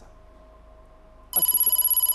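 Game-show electronic sound effect: a brief, rapid ringing trill with a high bell-like tone, starting about a second and a half in and lasting under a second. It marks the answer being revealed on the letter board.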